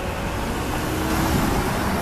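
Downtown street traffic: a steady low rumble of passing cars, growing a little louder about a second in.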